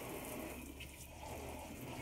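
Faint water sounds in a kitchen sink as a cup is swirled and washed by hand in the washing-up water.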